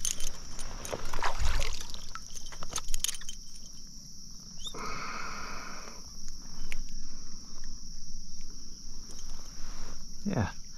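Insects chirring steadily in a high, even pitch, over irregular clicks, knocks and rustles of handling close to the microphone, with a dull thump about a second and a half in and a brief hiss about five seconds in.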